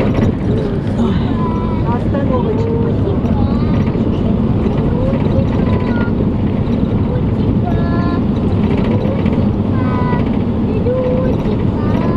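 Steady engine and road noise inside a moving bus, with voices talking at intervals over it.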